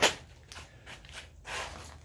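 A single sharp click right at the start, then faint scuffs and rustles: quiet handling and movement noise.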